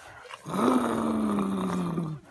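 A child's voice making a long, rough growling noise, starting about half a second in and sagging slightly in pitch as it is held.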